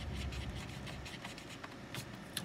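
A drawing tool rubbing and scratching across a paper tile in short, irregular strokes as graphite shading is worked in.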